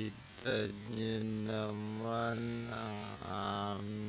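A low male voice held on one steady pitch in long drawn-out syllables, each lasting about a second or two, with short breaks between them.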